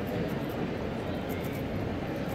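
Busy airport terminal ambience: a steady wash of crowd noise and building hum, with faint scattered clicks.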